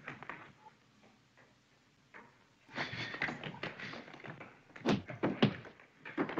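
Fight-scene soundtrack of an early-1930s sound film played over webinar audio: quiet at first, then a noisy scuffle from a little under halfway, with two sharp thuds about a second apart near the end.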